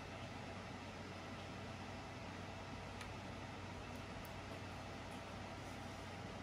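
Faint steady hiss with a low hum: quiet room tone, with one faint tick about halfway through.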